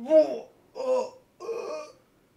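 A man's voice in three drawn-out, excited cries, each falling in pitch, with short gaps between them.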